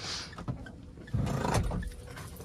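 Brief rustling with a dull thud about a second in, the loudest part, after a short hiss and a click: movement and handling noise inside a car's cabin.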